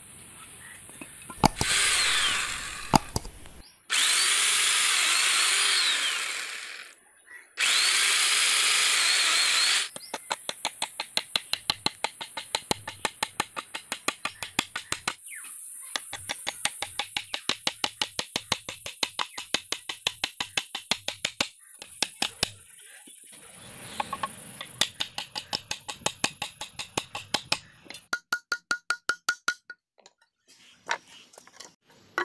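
A power tool runs in three loud bursts during the first ten seconds. Then a hammer drives nails into a wooden board in steady, rapid strikes, about four a second, with a few short pauses.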